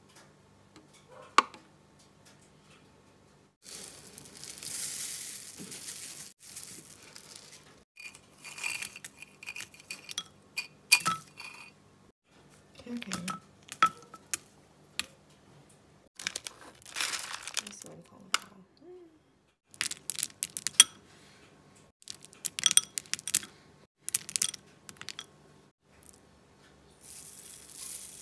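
Breakfast ingredients being added to a ceramic bowl, in separate bursts: packaging crinkling and tearing, dry oats poured in with a hiss, and walnuts and frozen berries dropped in with light clicks against the bowl and spoon.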